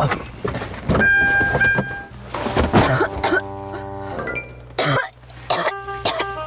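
Comic sitcom sound effects over background music: a held whistle-like tone about a second in, a short rough noisy burst, then a held musical chord, with a sharp burst near the end.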